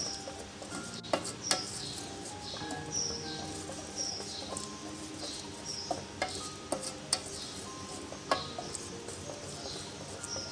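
A wooden spoon stirring a thick, wet date-and-milk mixture in an aluminium pot, with a steady scraping and squelching and several sharp knocks as the spoon hits the pot's sides.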